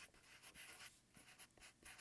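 Faint scratching strokes of a felt-tip marker writing on paper.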